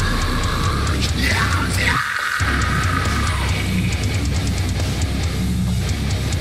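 Deathcore song with heavy distorted guitars and drums and a harsh screamed vocal over them. The low end drops out briefly about two seconds in.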